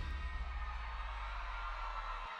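A live band's last chord ringing out after the song stops: a held low bass note with a fading wash of cymbal and instrument ring above it.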